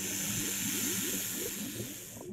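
A cartoon sound effect of a snake hissing, one long steady hiss, with faint bubbling underwater blips beneath it.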